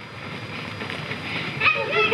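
High children's voices calling out near the end, over a steady background hiss.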